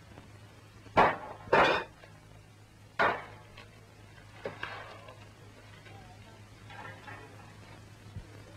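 Clatter and knocks of objects being handled: three loud, sharp sounds in the first three seconds, the middle one longer and rasping, then only faint scattered sounds. A steady low hum runs underneath.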